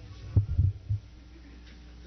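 A handheld microphone picks up a few dull low thumps in quick succession about half a second in, over a steady low electrical hum.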